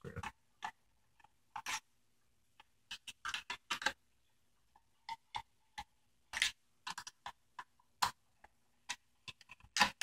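Irregular small metallic clicks and ticks from a hex screwdriver working out the small screws that hold a gearbox to a model tank's metal lower chassis, with short quiet gaps and a quick run of clicks about three seconds in.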